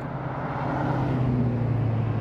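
Motor-vehicle engine hum with road noise that swells gently and then eases, with a faint tone sliding slowly down, as a vehicle passes on the road.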